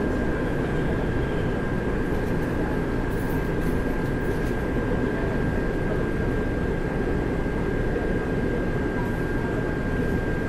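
Inside a Taipei Metro train car drawing alongside a station platform and coming to a stop: a steady low rumble of the running train, with a thin, steady high whine throughout.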